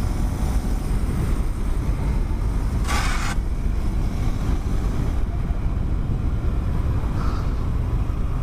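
Wind rushing over the microphone of a moving motorcycle, with the bike's engine and road noise under it as a steady low rumble. A short hissy gust comes about three seconds in.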